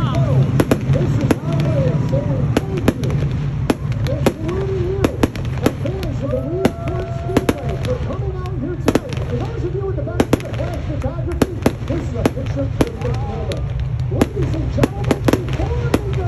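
Aerial fireworks display: a rapid, irregular run of sharp bangs and crackles, several a second, as shells and rockets burst overhead.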